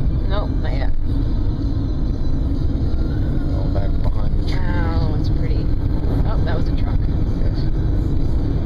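Steady low rumble of a car driving along the road, the road and engine noise heard from inside the cabin.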